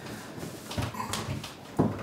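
Short whimpering moans and breaths from a couple during sex, in irregular bursts, with a louder burst near the end.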